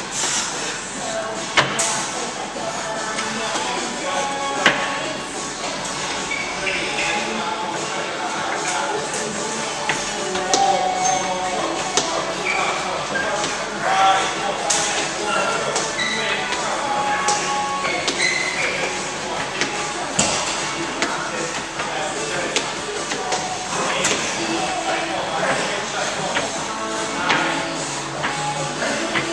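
Background music and voices in a large, echoing room, with occasional sharp knocks.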